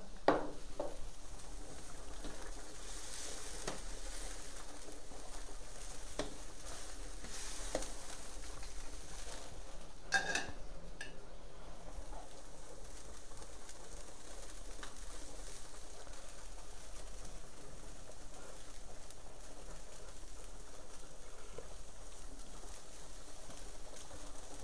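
Chicken and vegetable broth boiling in a wide steel paella pan over a wood fire, a steady sizzling hiss, with a few light clicks, the clearest about ten seconds in.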